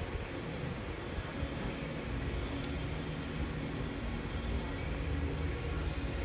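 Steady low rumble of room noise in a large indoor exhibition hall, with no distinct events.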